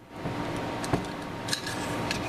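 Billet aluminium AR-15 charging handle being handled and fitted into the rear of an M4 upper receiver: light metal-on-metal scraping with a sharp click about a second in and a softer one near the end.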